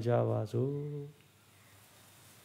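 A priest chanting a prayer in a man's voice on steady, held notes, stopping about a second in; after that only faint room tone.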